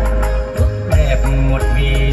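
Music playing from a vinyl record on a Sansui TAC 505 console stereo, through its cabinet speakers: a heavy, steady bass under a wavering melody.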